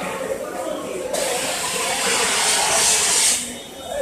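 Steam hissing from a 500-litre pressure cooker: a loud rush of steam starts about a second in, holds for about two seconds, and stops near the end.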